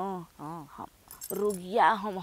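Bhojpuri dialogue, with a brief metallic jingle of bangles about a second in.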